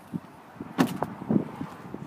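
Pickup truck's passenger door being shut, with a few knocks and thumps in a row, the loudest a little under a second in and again about half a second later.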